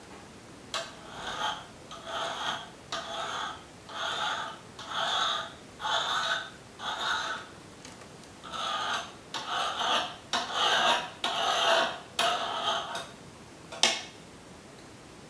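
Kitchen knife drawn repeatedly through rolled cracker dough on a cutting board: a rasping stroke about once a second, with a pause a little past the middle, and a few sharp taps of the blade on the board.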